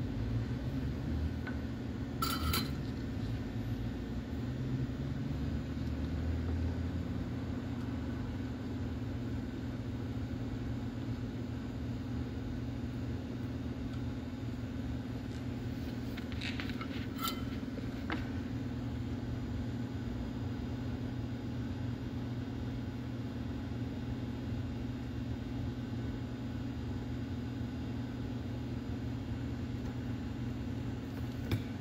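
Steady low background hum in a workshop, with a few brief light clinks of tools and parts being handled during soldering: one about two seconds in and a small cluster about sixteen to eighteen seconds in.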